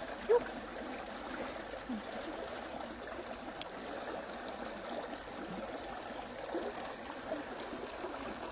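Steady trickle of running water, with a few short wet squishes as fingers press into a freshwater pearl mussel's soft flesh. The loudest squish comes about a third of a second in.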